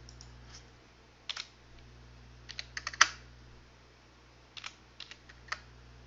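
Computer keyboard keystrokes: a few separate taps and short clusters of clicks, the loudest about three seconds in.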